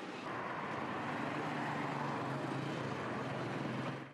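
Steady outdoor city street noise with traffic running throughout.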